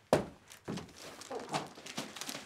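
A person jumping into a large cardboard gift box: one sharp thunk just after the start as he lands, then softer knocks and shuffling against the cardboard.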